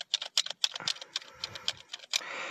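Small hard-plastic Happy Meal action figure being worked by hand, making a quick, irregular run of light plastic clicks and rattles as its gimmick is operated.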